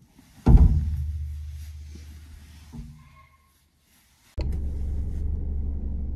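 A sudden low boom about half a second in that dies away over a few seconds. Near the end a vehicle engine's steady idle starts abruptly.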